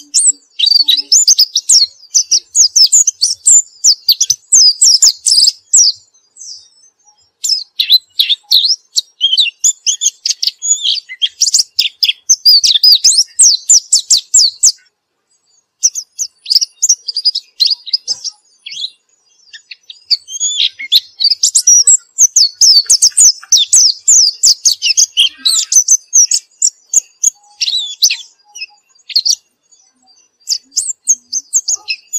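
A caged white-eye (pleci) singing in a fast, high twittering song, in long phrases of several seconds with short pauses between.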